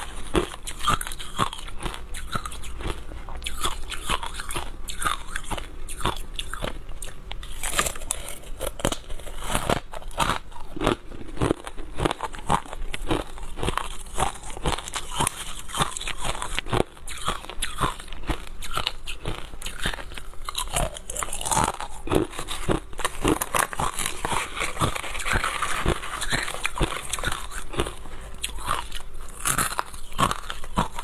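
Crushed ice being bitten and chewed in a continuous run of crisp crunches, heard very close up on a clip-on microphone.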